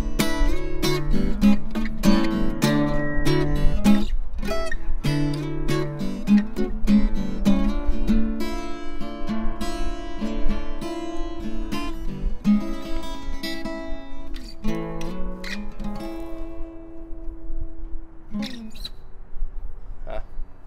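Steel-string acoustic guitar strumming chords in a steady rhythm, ending on a final chord that rings out and fades a few seconds before the end.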